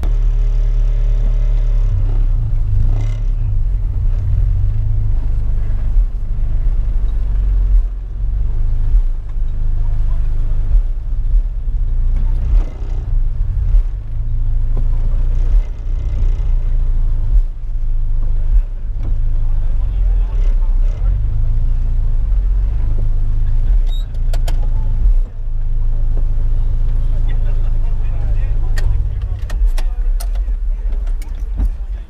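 Honda B20B four-cylinder engine running at low revs through an aftermarket Vibrant exhaust, heard from inside the Civic's cabin as the car creeps along: a deep, steady low note with a few brief dips.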